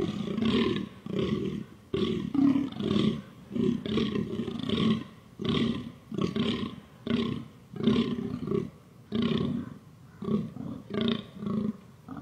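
Fallow deer buck giving its rutting groan: a long series of short, hoarse, belching calls, about one to two a second.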